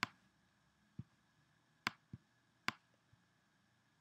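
Faint, sharp clicks of a computer mouse, about six at irregular intervals over a quiet background.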